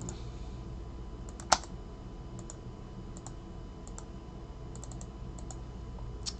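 Sparse computer keyboard and mouse clicks: one sharper click about a second and a half in, then a scattering of soft taps, as a list is copied and pasted into a spreadsheet. A faint steady electrical hum underlies them.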